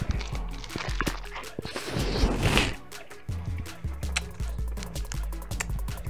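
Background music with a low bass line, over close-up chewing of a lettuce wrap: wet crunching and mouth clicks, with a louder crunch about two seconds in.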